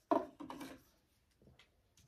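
Soft handling sounds of a highlighter stick being turned over and opened in the hands: a sharp knock just after the start, a second short rub about half a second later, then a faint touch.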